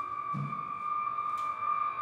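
A steady, high electronic drone from an electric guitar run through effects pedals, held without a break, with a short low note about half a second in.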